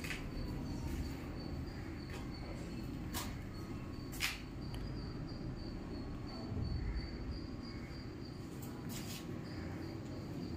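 A cricket trilling on one steady high note, over a low rumble of handling noise. A few sharp clicks stand out, the loudest about four seconds in.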